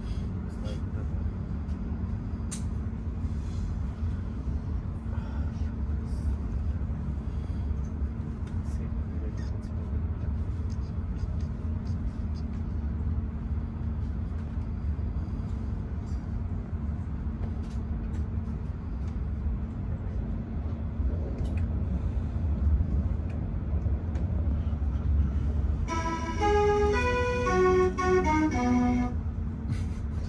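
Steady low rumble and hum of a passenger train running over the tracks, heard from inside the carriage, with faint scattered clicks. Near the end comes a short run of chime notes lasting about three seconds: the signal that precedes an onboard station announcement.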